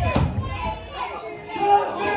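Children's voices shouting and calling out from a live audience, with one thump right at the start.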